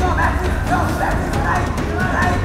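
Spectators shouting and yelling at a kickboxing fight, short rising and falling shouts one after another, over background music with a steady low bass.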